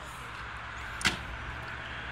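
A single sharp knock about a second in, over a steady low rumble.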